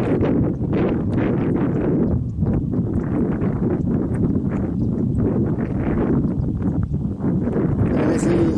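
Wind buffeting the microphone outdoors: a loud, unsteady rumble with gusty swells and no clear rhythm.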